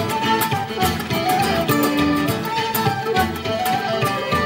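Live Irish folk band playing an instrumental passage: a fiddle carrying the melody over a steady bodhrán beat, with guitar accompaniment.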